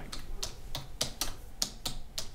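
Typing on a computer keyboard: a run of irregular keystroke clicks, several a second.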